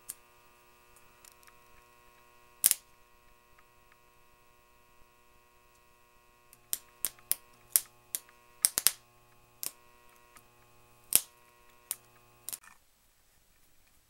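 Homemade transformer, wound on an induction motor's stator core, humming steadily on mains power. A screwdriver shorting across its low-voltage coil leads makes sharp snapping clicks of arcing: one about three seconds in, then a run of them from about seven to twelve seconds in. The hum cuts off shortly before the end.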